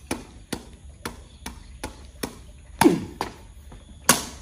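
Woven sepak takraw ball being kicked up repeatedly with the feet, a sharp tap about twice a second, with one heavier hit about three seconds in.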